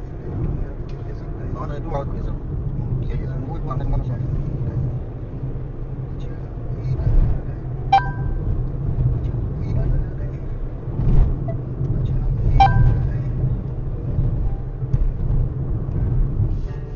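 Steady low rumble of a car driving, heard from inside the cabin through a dashcam, with two brief sharp blips about eight and twelve and a half seconds in.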